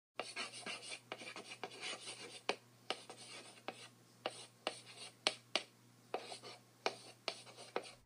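Chalk writing on a blackboard: rapid scratching strokes with many sharp taps of the chalk as letters are drawn, busiest in the first couple of seconds, then sparser taps.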